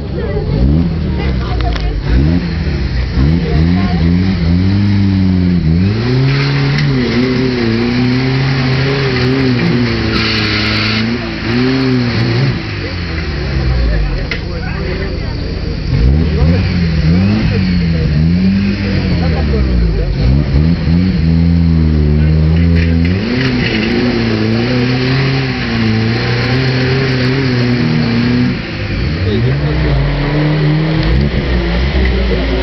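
Jeep Wrangler YJ engine revving up and down repeatedly under load as the 4x4 claws up a steep muddy slope, its pitch rising and falling every few seconds.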